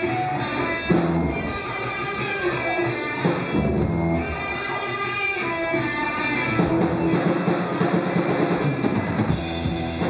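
A live rock band playing an instrumental passage: electric guitar and bass guitar over a drum kit, with a loud hit about a second in.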